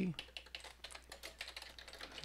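Computer keyboard being typed on: a quick, uneven run of individual keystroke clicks.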